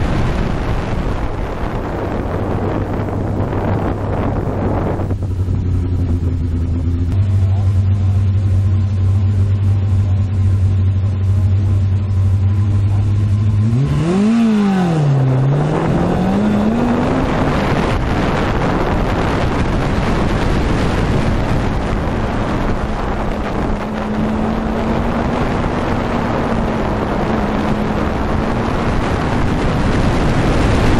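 Fiat 850 Spyder's four-cylinder engine running at speed, heard from the open cockpit with wind rushing past. The engine note holds fairly steady, then about halfway through dips sharply and climbs again, settling at a higher, steady pitch.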